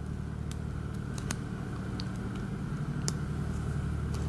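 A lock pick working the security pins inside an IFAM Uno 80 dimple shutter lock: a few sharp, isolated clicks over a steady low hum.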